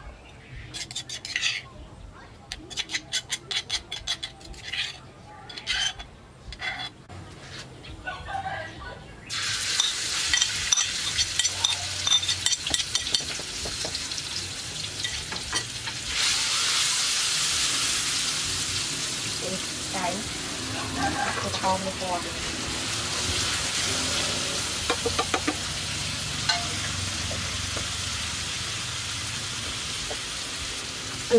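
Spoon tapping and scraping against a stone mortar and plate for the first several seconds. About nine seconds in, a sudden sizzle starts as pounded paste goes into hot oil in a steel wok. It gets louder around sixteen seconds, with a metal spatula scraping and stirring.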